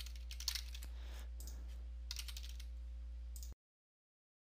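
Computer keyboard typing: short, uneven clusters of keystrokes over a steady low hum. The sound cuts off abruptly to dead silence a little after three and a half seconds.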